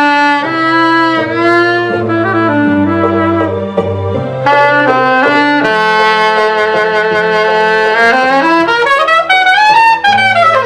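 A saxophone plays a slow melody of long held notes over a recorded backing track of bass and chords. Near the end it climbs in a long upward glide to a high note.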